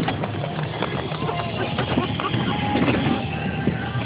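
Golf cart driving over a rough, rocky trail: a steady motor hum under constant rattling and knocking of the cart's body and frame.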